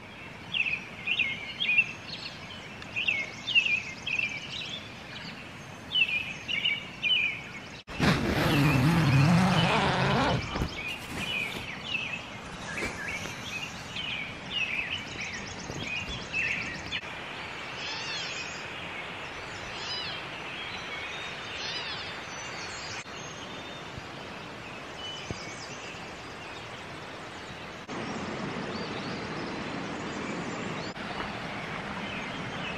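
Wild songbirds singing in short, repeated chirping phrases. About eight seconds in, a loud rush of noise lasting a couple of seconds covers them.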